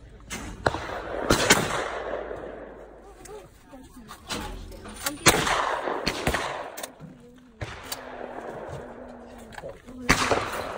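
Two shotgun shots at trap targets, the first about a second and a half in and the second about five seconds in, each followed by a rolling echo. Lighter clacks fall between and after them.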